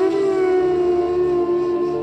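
Ambient meditation music: a long held flute note that starts just as the previous note ends and glides slowly down in pitch during the first second, then holds steady over a soft low drone.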